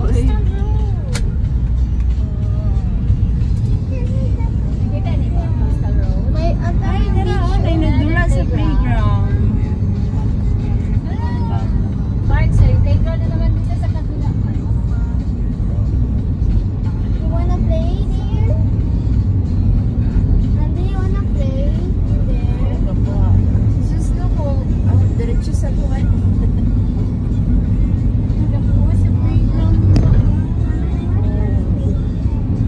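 Steady low road and engine rumble heard from inside a moving passenger van, with indistinct voices and music underneath it.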